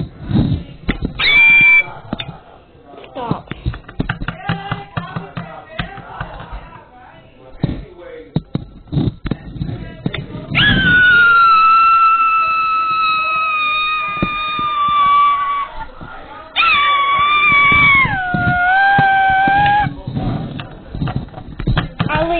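A child's high-pitched screams: a short shriek about a second in, a long held scream about halfway through that slides slowly down in pitch, then another that steps down, with knocks and handling of small toys on a table in between.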